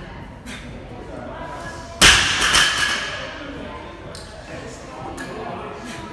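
A loaded barbell with bumper plates is dropped onto a rubber gym floor about two seconds in. It makes one loud thud, followed by a brief metallic rattle as it rings out.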